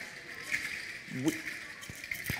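A faint, brief rattle about half a second in, with a sharp click near the end: noise-makers worn on a performer's body sounding as she moves. A man says a single word partway through.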